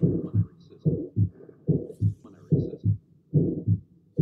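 Heart sounds heard through a stethoscope: a steady beat of about 70 a minute. Each beat is a pair of low thumps with a murmur between them, the systolic murmur of aortic valve stenosis.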